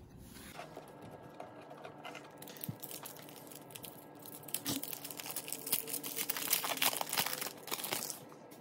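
Foil trading-card pack wrapper being torn open and crinkled by hand: a dense crackle that grows louder over the last three seconds or so.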